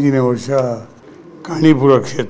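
A man's voice talking, holding one drawn-out word at the start, with a short pause a little after the middle before he goes on.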